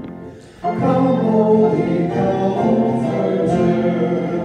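Several voices singing a hymn to acoustic guitar accompaniment. A brief pause for breath comes just after the start, then the next line begins about two-thirds of a second in and is held through the rest.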